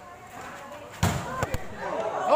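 A volleyball being struck hard during a rally: one loud, sharp smack about a second in, then two quicker knocks of the ball being played. Spectators' voices are in the background.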